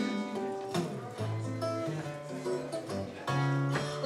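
Acoustic guitar playing alone between sung verses of a cowboy yodelling song: single picked melody notes over lower bass notes.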